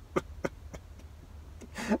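A man's laughter trailing off in a couple of short breathy huffs, then a quiet stretch over a steady low hum, with his voice starting again at the very end.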